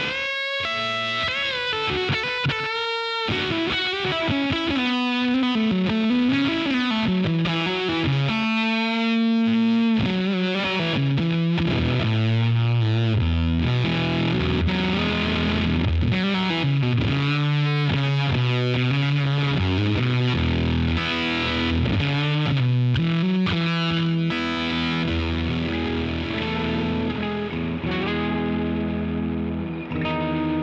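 Heritage H-535 semi-hollow electric guitar with humbucker pickups, played through an amp and effects pedals: a continuous passage of chords and moving single notes.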